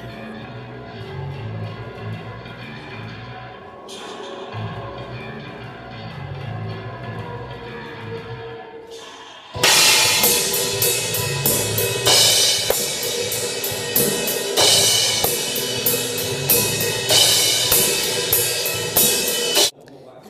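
Band music in a studio, at a moderate level for the first half; about halfway through a live drum kit comes in loud, with repeated cymbal crashes and drum hits over the music, and it all cuts off suddenly just before the end.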